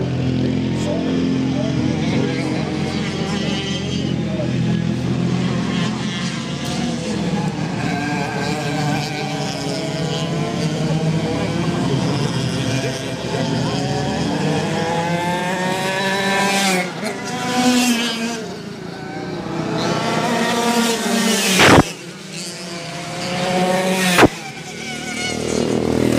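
Racing kart engines revving hard as a pack of karts accelerates, the engine pitch climbing and falling through the gears and corners. Two brief, very loud thumps come a little over three-quarters of the way in, a couple of seconds apart.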